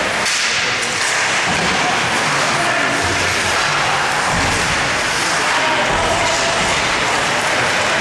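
Ice hockey play in an indoor rink: a steady hiss of skates on ice and spectator noise, with a few low thuds about three, four and a half, and six seconds in.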